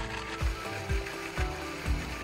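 Countertop electric blender running, grinding boiled jackfruit seeds to a puree, under background music with a steady beat about twice a second.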